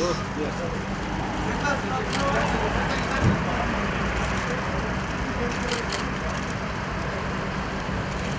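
Steady outdoor street noise with traffic and indistinct voices of people nearby, and a single brief thump about three seconds in.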